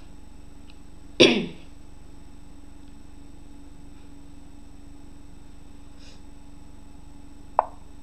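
A single short cough from a boy about a second in, over a steady low electrical hum. Near the end a brief sharp blip sounds.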